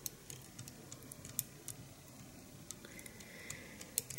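Faint handling sounds of fingers working head cement into a dubbing tail held on a needle: a few scattered small clicks at irregular intervals.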